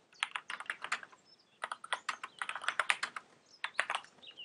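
Typing on a computer keyboard: a quick run of keystroke clicks, a short pause just after one second in, then a longer, denser run.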